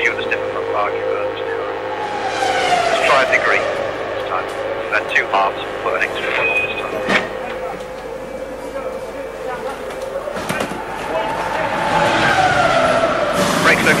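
Formula 1 cars' V10 engines passing on the circuit twice: one a couple of seconds in and a louder one near the end, each falling in pitch as it goes by.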